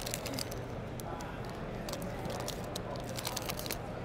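Foil trading-card pack wrapper being torn open and crinkled by hand: a string of short, sharp crackles over a steady background hubbub.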